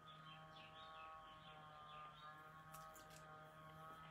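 Near silence: room tone with a faint steady hum and a few faint high chirps in the first couple of seconds.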